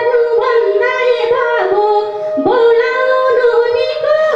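Woman singing a Nepali lok dohori folk song into a microphone, in phrases with bending, held notes, over a steady held accompanying tone.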